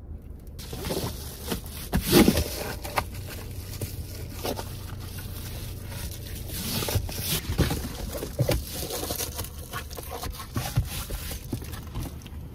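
Reflective foil window covers being pushed and fitted into a car's windows: irregular scraping and crinkling with sharp knocks against the glass and trim, over a steady low hum.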